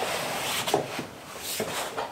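A cut sheet of foam rubbing against the walls of a hard plastic rifle case as it is pushed down into place, followed by a few short scrapes and soft knocks.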